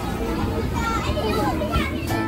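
Small children playing: scattered high child voices and chatter over a steady background hubbub.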